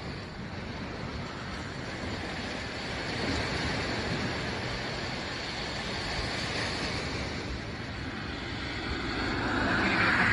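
Ocean surf washing onto the shore, a steady rush of water that swells about three seconds in and again near the end.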